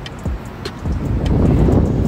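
Wind buffeting a phone's microphone, a low rumble that grows loud about a second in, with a few light handling clicks.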